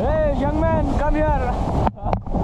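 Waterfall pouring down right onto the camera, a loud steady rush of falling water. A man's voice calls out over it in the first second and a half. The sound drops out briefly near the end.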